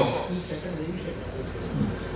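A pause in a man's amplified talk, leaving a steady faint background of insects chirring, typical of crickets, with a trace of his voice trailing off.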